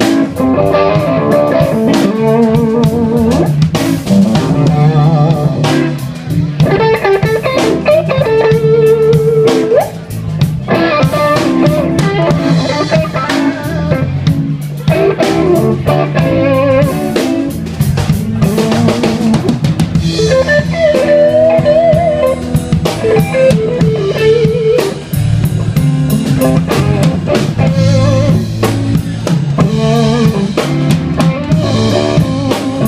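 Live blues band playing an instrumental passage: an electric guitar plays lead lines with bent notes over a drum kit.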